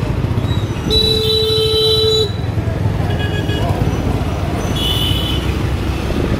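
A vehicle horn sounds one long, steady blast of just over a second, followed by two short toots a little later, over a constant rumble of road traffic.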